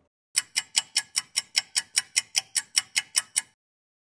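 Ticking sound effect, like a fast clock: a steady run of sharp, evenly spaced ticks, about five a second, for about three seconds, then stopping abruptly.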